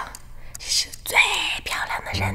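A woman whispering a question in Mandarin.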